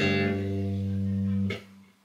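Electric bass guitar played fingerstyle, several picked notes ringing together as a chord, part of a Spanish-style picking pattern. The notes are cut off about a second and a half in, leaving a short silence.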